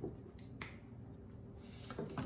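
A Sharpie marker's cap being pulled off: a couple of faint clicks about half a second in, then quiet handling.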